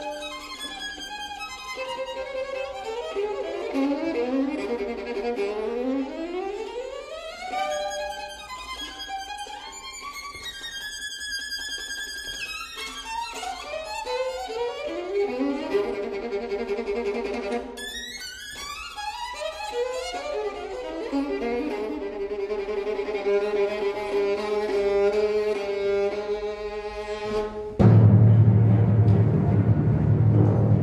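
Solo violin playing a concerto passage of quick runs, rising scales and held high notes. Near the end the orchestra comes in suddenly and loudly, with a heavy low entry.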